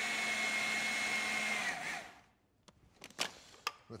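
Food processor motor running steadily as it mixes shortcrust pastry dough with cold water, switched off about two seconds in as the dough comes together and spinning down. A few clicks and knocks follow as the lid is taken off the bowl.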